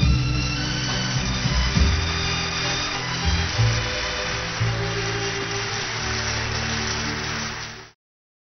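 Audience applauding over the orchestra's closing bars, then the sound cuts off suddenly near the end.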